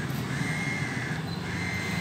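Outdoor background noise: a low steady hum with two faint, thin high tones, each about half a second long.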